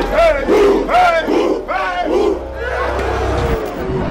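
A group of voices yelling together in a rallying battle cry: several loud shouts in quick succession, over a low rumble that cuts off shortly before the end.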